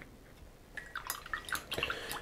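A quick scatter of small clicks and light taps, starting about a second in, from hobby items being handled on the work bench.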